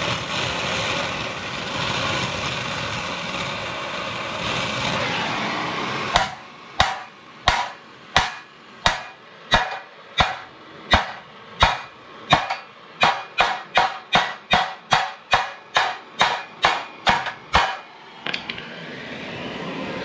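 A gas torch flame hissing steadily as it heats the bent steel front bumper of a 1952 Ford F1. About six seconds in, a hammer starts striking the hot spot of the bumper to bend it straighter: about two dozen sharp metal blows, slow at first and then faster, before the torch hiss returns near the end.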